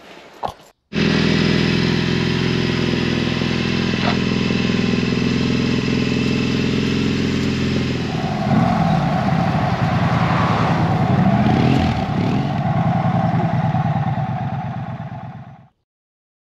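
Triumph parallel-twin motorcycle engine running steadily. About halfway through the sound changes and grows louder, as if revving or pulling away. It cuts off suddenly near the end.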